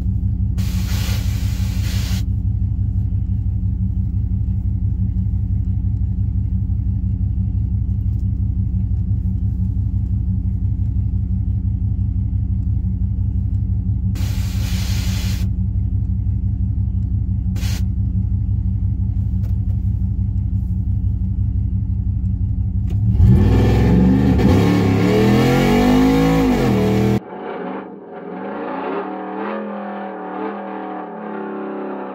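Cammed Hemi V8 of a Ram 1500 pickup idling with a steady, lumpy rhythm, heard from inside the cab, with a few short bursts of hiss. About 23 s in the engine revs up and falls back over a few seconds, much louder. It then cuts off suddenly to a quieter engine note that steps upward.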